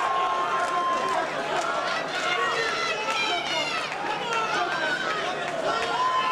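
Fight spectators shouting and calling out, many voices overlapping, with one long held call in the first second.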